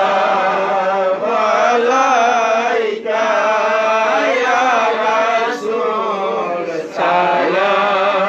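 Men chanting a Sufi devotional chant through a microphone and loudspeaker, in melodic phrases of a second or two with short breaks between them.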